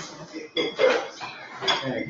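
A few light clinks, clatters like tableware being handled, twice within the two seconds, over a low murmur of voices.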